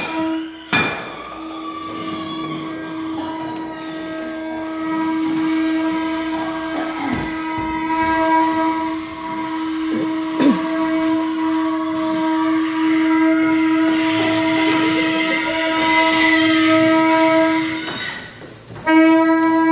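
Saxophone holding one long, steady, reedy note that sounds like a train horn, with a sharp click about a second in and a hiss joining over the last few seconds.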